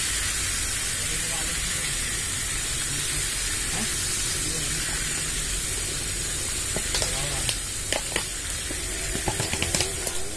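Meat frying in a pan over a campfire, a steady sizzling hiss, with a few light clicks near the end.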